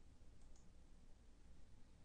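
Near silence: faint room tone with one soft click about half a second in.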